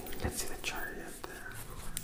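A person whispering softly, with light rustles and clicks from a tarot deck being handled.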